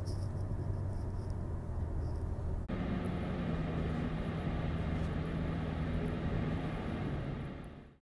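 Steady road and engine noise inside a moving car's cabin, heaviest in the low rumble. About two and a half seconds in it changes abruptly to a brighter noise with a steady low hum, and it fades out near the end.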